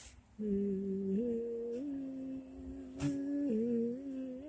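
A person humming a slow tune in long held notes, the pitch stepping up twice and dropping again near the end, with a brief click about three seconds in.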